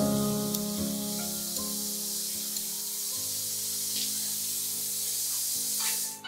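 Bathroom water running in a steady hiss that cuts off suddenly at the very end, over slow piano music.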